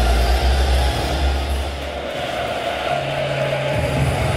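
Music played over a stadium PA, with long held bass notes that change about two seconds in, over the steady din of a football crowd.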